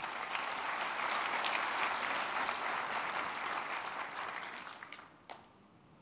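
Audience applauding, dying away about four to five seconds in.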